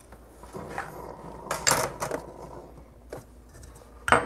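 Light knocks and clinks of hands handling cup and metal parts at an espresso machine's group head, with a double knock about a second and a half in and a few softer ones around it.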